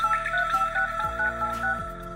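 Keypad tones from a Xiaomi Redmi Note 7's phone dialer as a number is typed quickly: a run of short two-tone beeps, one per digit, about four a second, over background music.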